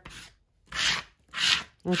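Plastic card scraping fluid acrylic paint across thin paper laid over a stencil: two short scraping strokes a little over half a second apart.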